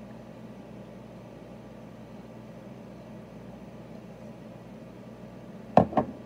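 Steady low room hum and hiss while a boy drinks water from a plastic cup, with no clear gulps heard. Near the end comes one sudden, short, loud sound as he finishes drinking and takes the cup from his mouth.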